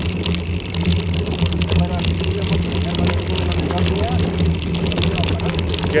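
Mountain bike rolling downhill over a loose gravel track, recorded by a bike-mounted action camera: a steady low rumble of wind and vibration on the microphone, with a continuous crackle of tyres on stones and the bike rattling.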